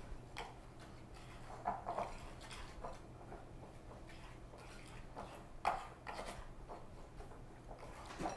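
Fingers rubbing butter into flour and sugar in a glass mixing bowl to make a crumb topping: faint rustling and scattered soft clicks, over a low steady hum.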